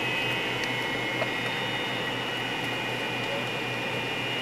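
Steady cabin noise of an American Airlines MD-80 taxiing, with its rear-mounted Pratt & Whitney JT8D engines giving a steady high whine over a low hum and the rush of cabin air.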